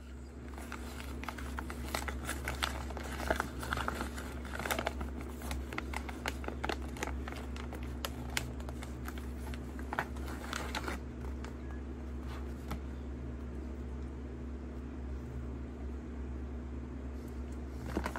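Paper fast-food sandwich wrapper being unwrapped and crinkled by hand, a dense run of crackles that thins out about eleven seconds in, over a steady low electrical hum.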